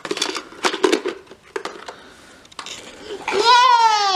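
Hard plastic toy pieces clicking and knocking together as a toddler handles a toy garbage truck and its little blue trash can, several quick clacks in the first second and a few more after. Near the end a long cheering voice slides down in pitch and is the loudest thing heard.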